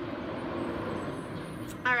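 A steady rushing noise, even and unbroken, with a voice starting near the end.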